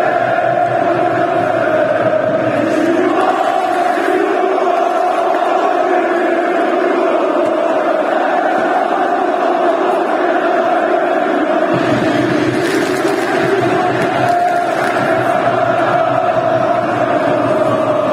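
A large crowd of football supporters chanting together in a stadium stand, loud and steady, the mass of voices holding a sustained pitch.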